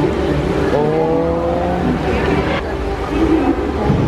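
A steady low rumble, with a long drawn-out vocal call about a second in that rises slightly and then holds its pitch.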